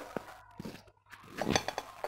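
Faint handling noise: a few light clicks and rustles, the loudest about one and a half seconds in.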